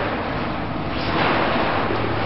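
Pop-up tent fabric rustling as the tent is twisted and folded together by its hoop rings, a steady noise that grows a little louder about a second in.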